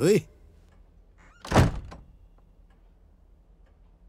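A single loud thump about one and a half seconds in, short and sudden.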